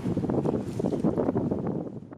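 Wind buffeting the microphone aboard a boat running at speed on open water, over a rough, uneven low rumble of engine and rushing water.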